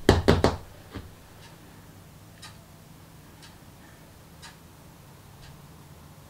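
A quick cluster of sharp knocks and clicks from small hard objects being handled, with one more knock about a second in. After that a faint clock ticks about once a second.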